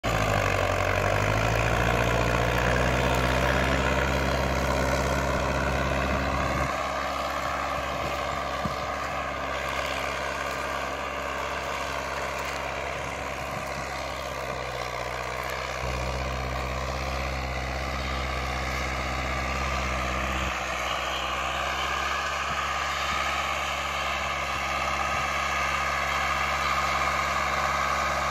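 John Deere 2135 tractor's diesel engine running steadily under load as it pulls a cultivator through the soil. It fades as the tractor moves away after about six seconds, then grows louder again toward the end as it comes back near.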